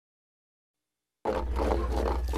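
Silence, then a little over a second in, outdoor background sound cuts in abruptly: a loud, steady low hum under a bed of noise.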